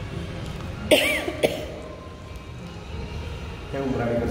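A person coughing: a sudden loud burst about a second in, with a second short one half a second later. Voices pick up near the end.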